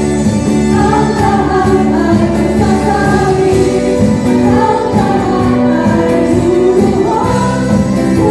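Several women singing a song together into microphones through a PA, with a live band of drums and acoustic guitar accompanying them.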